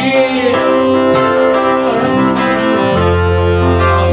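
Live band playing an instrumental passage: saxophone holding long notes over keyboard, with a low bass note that drops out and comes back about three seconds in.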